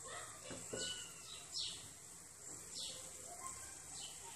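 Faint, steady sizzle of almond briouats deep-frying in hot oil, with a few short, high chirps falling in pitch over it.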